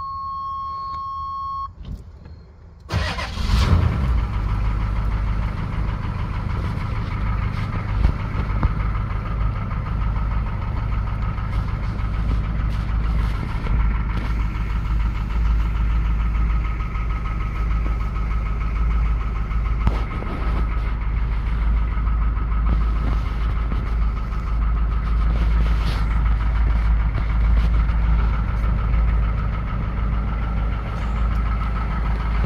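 A steady warning tone sounds and stops; then the 1987 GMC Suburban's 6.2 L V8 diesel starts about three seconds in and settles into a steady idle.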